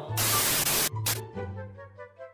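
TV static hiss used as a transition effect: one loud burst of about three-quarters of a second and a second short burst, then soft music notes come in.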